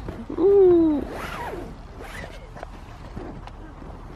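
A woman's drawn-out sleepy groan, falling in pitch over about half a second, followed by a brief rasping rustle, then soft rustling.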